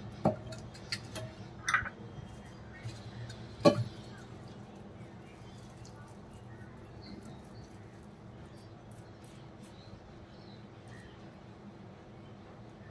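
A few short knocks and clinks in the first four seconds, the loudest near four seconds in, as hands work minced chicken mixture against a steel bowl. After that come faint soft sounds of the hands shaping the mixture into a flat patty, over low room tone.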